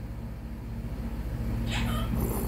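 A steady low hum, with a faint short sound near the end.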